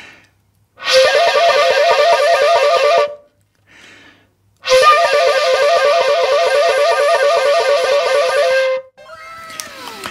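Shakuhachi playing koro koro: a held note rapidly warbled between two close pitches by alternately closing the two lowest finger holes, a rattling effect said to imitate the calls of cranes. It comes as two phrases, a short one of about two seconds and a longer one of about four, with a brief pause and a faint breath between them.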